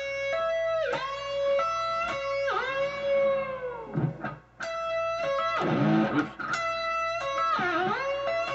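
Electric guitar playing a lead solo phrase with whammy-bar dips: held notes swoop down in pitch and come back up several times, with a short break about four seconds in.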